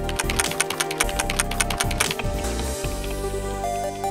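Theme music with a typing sound effect: a quick run of key clicks for about the first two seconds, then the music alone.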